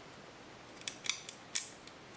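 A metal hard-drive tray and screwdriver being handled: quiet at first, then a handful of sharp, light metallic clicks in the second half, the loudest about a second and a half in.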